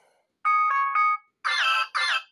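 Two short alarm-tone previews from a Motorola smartphone's speaker, played as tones are tapped in its default alarm sound list. The first is a bright electronic chime of a few repeated notes lasting under a second. After a brief gap a second, different chiming tone with falling notes starts and runs on past the end.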